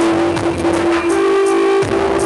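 Live band music with a woman singing one long held note into a microphone; the note steps up to a higher pitch about a second in and ends near the close.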